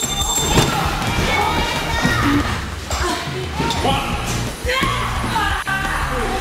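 Music playing, with voices and several heavy thuds of bodies hitting a wrestling ring mat.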